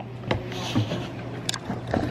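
A steady low hum with a few short clicks and knocks scattered over it, one sharper than the rest about a second and a half in.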